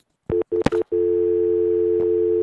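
Telephone dial tone: after two short blips and a click, a steady two-note tone starts about a second in and holds. It is the sign that the phone line is open and the call is over.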